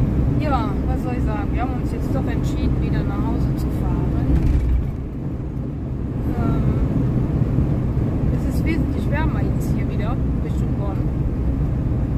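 Steady road and engine rumble inside the cab of a moving camper van. A voice talks quietly over it during the first few seconds and again about nine seconds in.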